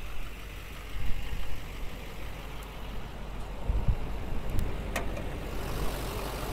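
The Chevrolet Silverado 2500 HD's 6.6-litre Duramax LMM V8 turbodiesel idling steadily. There are low thumps about one and four seconds in and a sharp click about five seconds in.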